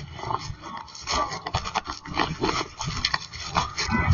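Rustling and scuffing on a police body camera's microphone as the wearer walks, with irregular footstep knocks and clothing rubbing against the mic.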